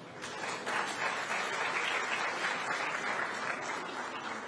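Audience applauding, building up within the first second and thinning out near the end.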